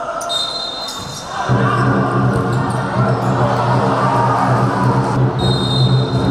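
Futsal referee's whistle blown twice, a long blast about a second long near the start and another near the end, over the hall's sound of ball bounces on the court.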